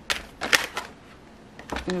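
Tarot deck being shuffled by hand: a few sharp card snaps and flicks, the loudest about half a second in.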